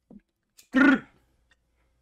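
A person clears their throat once, briefly, about a second in.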